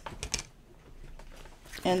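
Tarot cards being shuffled by hand: a quick cluster of sharp card clicks about a quarter second in, then softer card handling.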